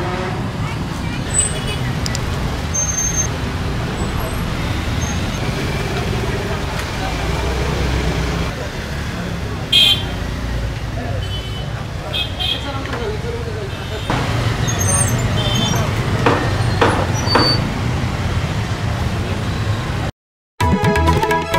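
Street ambience: a steady low rumble of road traffic, with background voices and scattered short sounds, the loudest a brief sharp one about ten seconds in.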